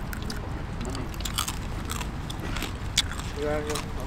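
Biting and chewing into crispy pata, deep-fried pork leg with crackling skin: a run of short, crisp crunches, with one sharper crunch about three seconds in.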